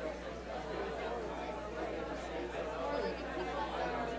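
Hubbub of many people talking at once in pairs and small groups: overlapping conversations, with no single voice standing out.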